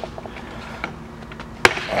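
A single sharp knock about a second and a half in, over low steady background noise.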